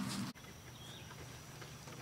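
Faint outdoor background: a steady low hum that stops abruptly about a third of a second in, then quiet hiss with a faint high chirp.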